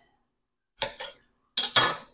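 A steel kitchen knife knocking on a granite countertop: a quick double tap about a second in, then a louder clatter near the end as the knife is laid down.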